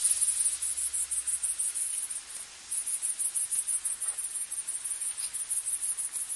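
Grasshopper stridulating: a fast, even train of high-pitched chirps that stops for about half a second around two seconds in, then carries on.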